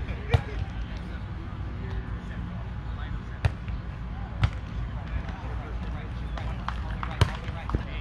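Volleyball being struck by players' hands during a rally on grass: sharp slaps, the loudest about a third of a second in, twice near the middle and once near the end, with a few softer touches between. Distant players' voices and a low steady rumble lie underneath.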